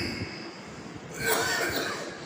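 A man coughing, loudest a little over a second in.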